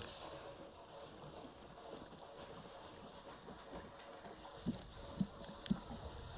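Liquid pouring steadily from a 2.5-gallon plastic jug into a spray tank's fill opening, faint, with a few short glugs near the end.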